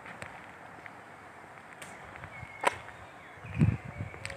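Footsteps on paving stones, with one sharp click about two and a half seconds in and low bumps near the end.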